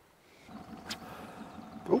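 A small fishing boat's motor running steadily at low speed, a low hum with a faint even whine that comes in about half a second in, with a single sharp click about a second in.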